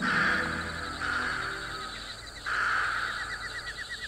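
Night insects chirping, a rapid pulsing trill of short chirps over a hissing buzz that drops out briefly and returns about two and a half seconds in, with a faint low steady drone underneath.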